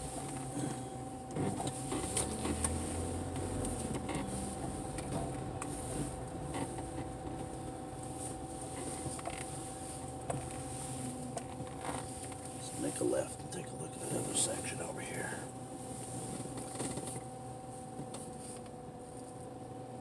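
Low, steady car-cabin rumble with a faint constant hum and occasional small clicks and knocks.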